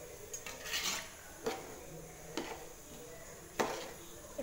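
A flat metal spatula stirring rice through watery biryani masala in a cooking pot. It scrapes and clinks against the pot several times, with the loudest knock near the end.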